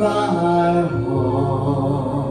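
A man singing a slow Christmas song into a microphone with long held notes, over a musical accompaniment.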